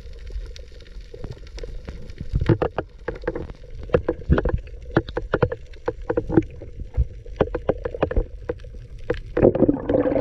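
Muffled underwater sound of a freediver swimming up from the reef, heard through the camera's housing: irregular clicks and knocks that grow louder and more frequent from about two and a half seconds in, then a rush of water near the end as he nears the surface.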